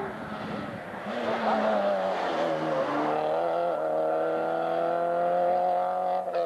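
Rally car's engine running hard at high revs on a stage: the note steps down in pitch about two and a half seconds in as the car goes past, then holds a steady, slowly rising note as it pulls away.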